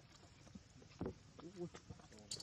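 Faint, brief voice sounds over quiet background noise: one short sound about a second in, then a short pitched call or syllable.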